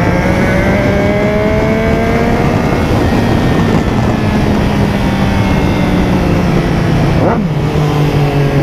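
Motorcycle engine running under load at highway speed, its pitch climbing slowly for the first few seconds and then holding steady, with heavy wind noise over the rider's camera. About seven seconds in there is a quick falling sweep as another sport bike comes alongside.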